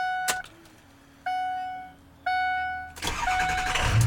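Ford dashboard door-ajar warning chime sounding about once a second, then the 2006 F-250's 6.0-litre Power Stroke V8 diesel cranking about three seconds in and catching into a low idle at the very end.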